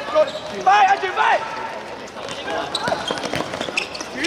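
Futsal ball being kicked and bouncing on a hard court, with a few sharp thuds in the second half. Players shout about a second in.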